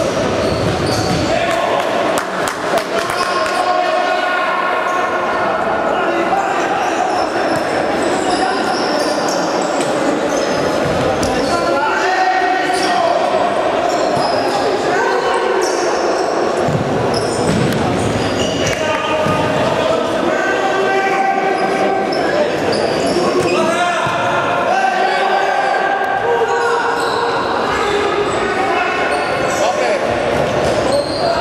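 A futsal ball being kicked and bouncing on a sports-hall floor, echoing in the large hall, with players' and spectators' voices calling out throughout.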